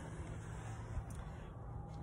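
Quiet background noise with a low rumble and a faint click about a second in, during a pause between speech.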